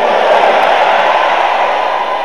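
A long breath blown into a handheld microphone: a steady rushing hiss that starts abruptly and fades slowly.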